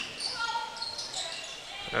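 Court sounds of a basketball game in play in a large hall: a ball bouncing on the hardwood floor, with a few short high squeaks about half a second in.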